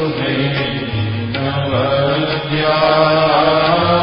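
A male voice chanting a Sanskrit hymn verse in a drawn-out melodic style over a steady instrumental drone.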